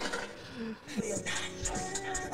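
Quiet music with a voice in it, playing at a moderate level.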